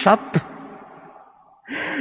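A man's voice finishes a phrase just after the start, and its echo fades away in a large, reverberant church. After a short pause, a sharp intake of breath close to the microphone comes near the end, just before he speaks again.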